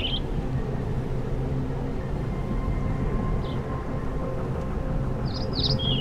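Steady low background ambience with a few short bird chirps, one about halfway through and a couple near the end.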